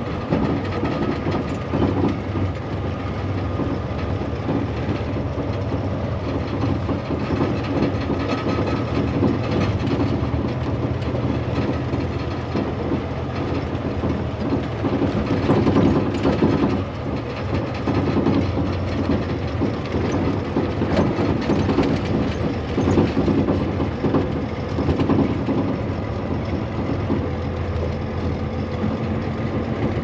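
Inside a tractor-trailer cab driving slowly over a rough, rutted gravel road. The diesel engine runs steadily under constant rattling and knocking from the cab and trailer jolting over the bumps.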